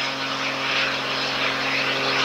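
Embraer Phenom 100 light jet running its two turbofan engines at low power while taxiing: a steady jet hiss with a low, even hum underneath.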